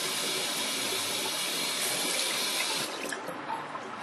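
Tap water running into a bathroom sink and over a hand, shut off about three seconds in.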